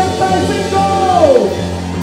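A live band playing loudly, with a long held vocal note over it that slides down in pitch about a second and a half in.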